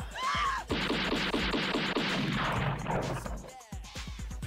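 A long burst of automatic gunfire as a film sound effect, about seven shots a second for roughly two and a half seconds, followed by a few scattered cracks near the end, over background music. A man's laugh trails off at the very start.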